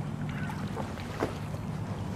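Lake water lapping with small splashes as Canada geese paddle close by, over a steady low hum.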